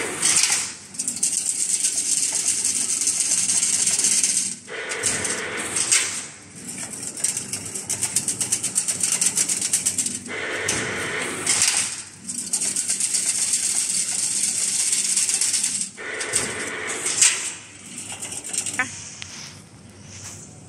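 Automatic chain link fence machine running in its weaving cycle as it coils wire into spirals for the diamond mesh. Each cycle has about four seconds of fast, high rattling followed by a shorter, fuller clatter, repeating three times.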